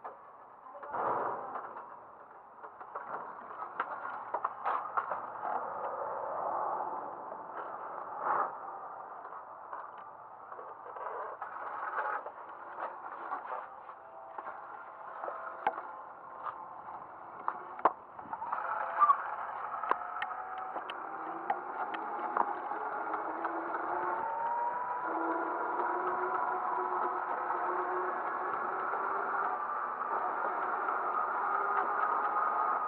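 Scooters on the move: irregular rattles and knocks as they roll slowly over rough ground, then, about two-thirds of the way in, a steadier motor-and-wheel hum with a faint whine that rises a little as they pick up speed on the sidewalk.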